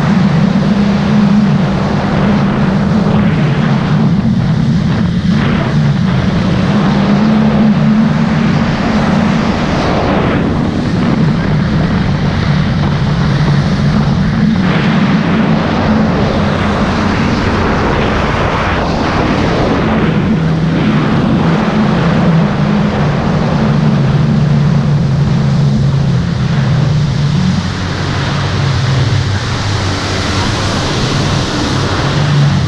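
Yamaha jet ski engine running hard at planing speed, a loud steady drone over the rush of water spray. Its pitch wavers a little, sagging lower in the second half.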